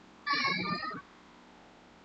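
A short animal call, heard once, lasting about three-quarters of a second, following close after a similar call.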